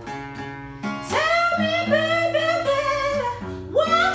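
A woman singing a slow soul ballad over acoustic guitar chords. The guitar carries a short gap alone, then her voice comes in about a second in, sliding up into long held notes, and starts a new phrase the same way near the end.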